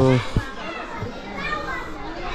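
A man's voice trails off just after the start, then distant voices of people, children's among them, chatter in the open courtyard.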